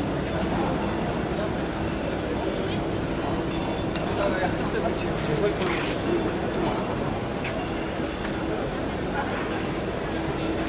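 Crowd ambience: scattered voices of people talking and moving about, over a steady hum.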